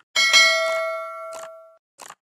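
Notification-bell sound effect: a bright metallic ding struck twice in quick succession, ringing and fading over about a second and a half. Short click-like bursts come just before it and near the end.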